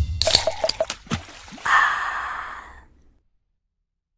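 Sound effects for an animated logo intro: a few quick wet splash hits in the first second, then a noisy swoosh that swells at about a second and a half and fades away. The last second is silent.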